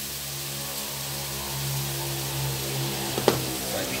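Food frying in oil in a wok: a steady sizzling hiss under a steady low hum, with one sharp click about three seconds in.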